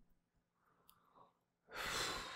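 Near silence with a faint click about halfway, then, near the end, a man's breathy sigh or exhale close to the microphone.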